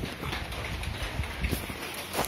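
Footsteps of sneakers on a concrete floor: irregular taps and scuffs close by, over a low rumble.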